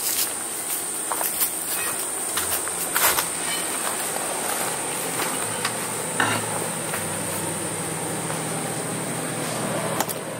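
Steady high-pitched insect drone, with scattered footfalls and handling clicks. A low hum comes in about halfway through.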